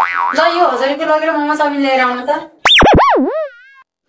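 A comedy 'boing' spring sound effect about two and a half seconds in, its pitch wobbling steeply down and up and dying away within about a second. Before it, a voice speaks in a drawn-out, sing-song way.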